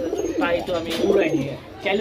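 Domestic pigeons cooing in a cage.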